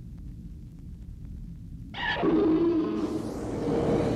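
A low rumble, then a loud, harsh monster cry that starts suddenly about two seconds in: Rodan's screech, a film sound effect.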